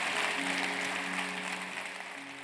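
Audience applause with held-note closing music underneath, both beginning to fade out in the second half.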